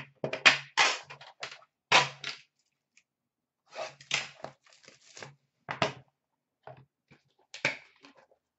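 A metal card tin being opened and handled on a glass table: a string of sharp clicks and knocks as the lid comes off and the inner box is set down, busiest in the first two seconds and again in the middle.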